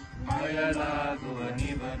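A singer's voice holding and bending a drawn-out melodic phrase of a chanted Kannada devotional song, over a steady drone accompaniment; the voice enters shortly after the start and fades near the end.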